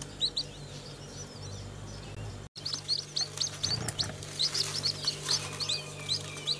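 Newly hatched chicks, Japanese quail and chicken, peeping in short high chirps. The chirps are sparse at first; after a brief break about two and a half seconds in, many come in quick succession.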